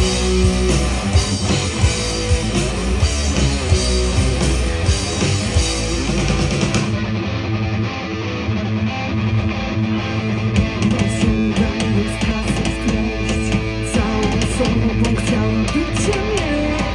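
Hard rock band playing live: distorted electric guitar, bass guitar and drums in an instrumental passage without vocals.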